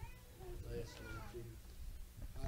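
Faint voices of a congregation calling out in praise, with scattered high, drawn-out cries that rise and fall in pitch.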